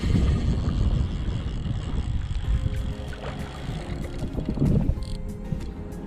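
Low wind rumble on the microphone, strongest in the first second or two, over faint steady background music.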